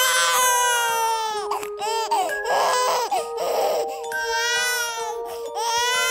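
Newborn baby crying: several high-pitched wails, the longest at the start and about two-thirds of the way in, with shorter cries between.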